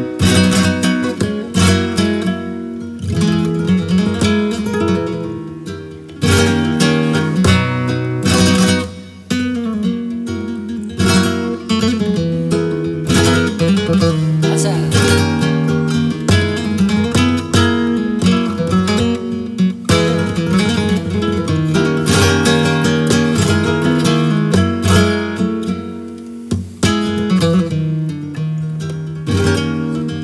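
Flamenco guitar played solo: picked melodic runs over ringing bass notes, broken every few seconds by sharp strummed chords.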